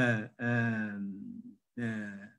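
A man's voice over a video call, drawing out long hesitation sounds like "uhh" in three held stretches, the longest slowly falling in pitch.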